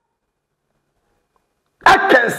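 Dead silence, with the sound cut out entirely, then a man's voice starts abruptly near the end.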